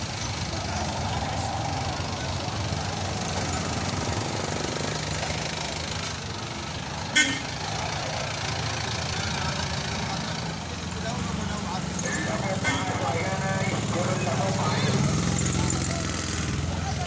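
Busy street-market ambience: many voices talking at once over a steady low engine hum from nearby traffic, with one sharp knock about seven seconds in.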